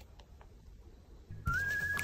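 A short whistling tone near the end, sliding up slightly and then held, starting with a click, over faint rustling.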